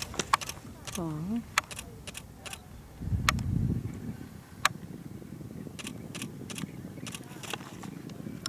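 Camera shutter clicks, about a dozen, fired irregularly, with a brief low rumble about three seconds in.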